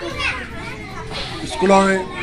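A man speaking into a microphone, with children's voices in the background.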